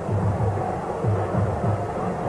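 Stadium crowd noise under a match broadcast, with a repeated low drumbeat.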